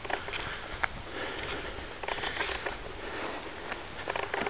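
Irregular rustling and soft steps of someone walking through tall weeds and brush, with a few faint clicks.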